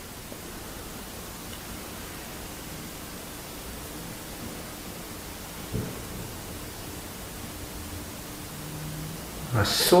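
Steady hiss of a quiet room with a single faint, dull knock about six seconds in, taken as a knock in answer to a request to knock. A man's voice starts right at the end.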